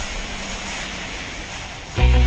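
A steady rushing noise, slowly fading away, with no clear tone or rhythm.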